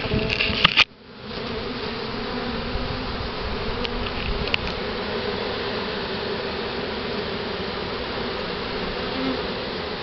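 Honey bee swarm buzzing steadily in a close, dense hum at the entrance of a hive box as the swarm is hived. A few sharp clicks and a brief dip in the sound come in the first second.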